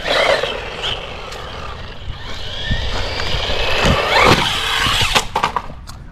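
Brushless motor of a 1/16-scale RC car whining at full throttle as it is driven flat out at a jump ramp, the pitch rising and gliding over tyre noise on asphalt, with a few knocks about four seconds in; the sound cuts off suddenly a little after five seconds.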